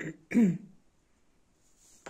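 A person clearing their throat with a short cough, two quick sounds in the first half second.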